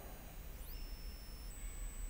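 A pause in speech with faint steady background hiss, and a few faint thin high-pitched tones, one briefly gliding upward.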